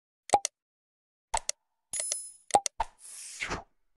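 Sound effects of an animated subscribe end card: pairs of quick clicking pops, a short high bell ding about two seconds in, three more clicks, and a brief whoosh near the end.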